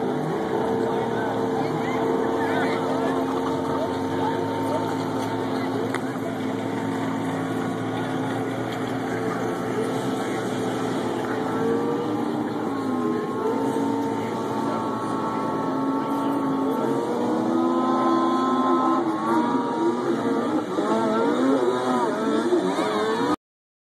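Snowmobile engine running at steady high revs as the sled skims across open water. Its pitch wavers in the second half and climbs near the end.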